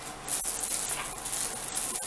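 Crinkling and rustling of a clear plastic packaging bag being handled, starting about a quarter second in and going on irregularly.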